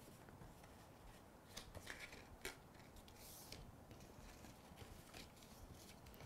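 Faint crackles and soft ticks of a die-cut cardstock card base being folded by hand, accordion-style, along its score lines. The crackles cluster in the middle, with another near the end.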